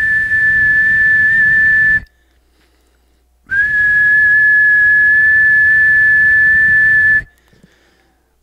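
A person whistling one steady, even note into the microphone of a CB radio transmitting in SSB, twice: a note of about two seconds, a pause of about a second and a half, then a longer note of nearly four seconds, each beginning with a short upward slide. The whistle drives the single-sideband transmission, pushing the radio's current draw toward 5.5 amps.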